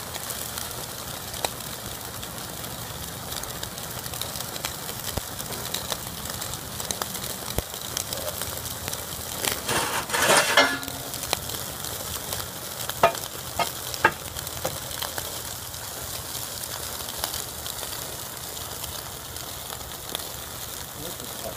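Steaks sizzling on a steel grill grate over a stream of molten lava: a steady crackling hiss with scattered pops. About halfway through there is a louder burst of crackling, followed shortly after by a few sharp pops.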